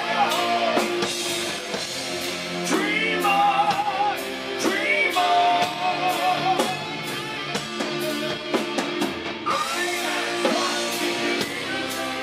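Live hard rock band in full play: distorted electric guitar, bass and drums with crashing cymbals, under a wavering lead melody that slides up in pitch a few times.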